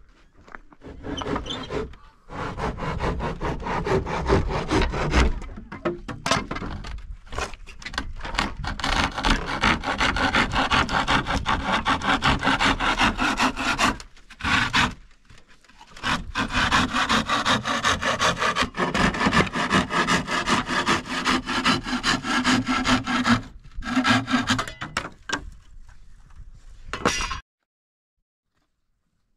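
Hand saw cutting through a wooden plank: fast back-and-forth strokes in long runs, broken by a few short pauses, stopping abruptly near the end.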